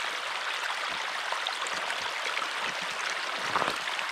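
Steady rush of running water from a stream, even in level throughout.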